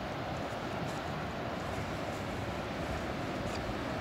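Ocean surf heard as a steady, even rushing noise, with no single wave standing out.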